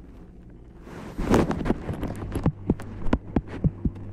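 Low rumble of a moving commuter train interior. From about a second in, a quick irregular run of loud, sharp clicks and knocks, about a dozen, is the loudest sound.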